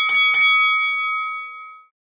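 Boxing ring bell struck three or four times in quick succession, then ringing on and fading out before the end: the signal between rounds.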